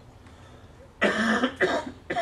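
A person coughing twice: a loud cough about a second in and a second one just over half a second later.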